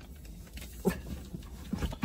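A dog in the back of the car giving a few short whines, one about a second in and two close together near the end.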